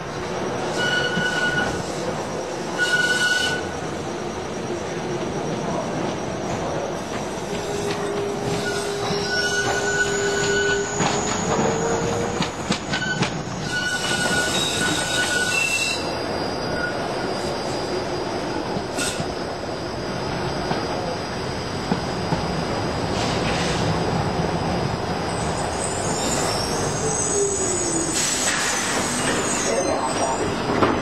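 A tram running round a tight turning loop, its wheels squealing on the curve in several on-and-off high tones over the steady rumble of wheels on rail.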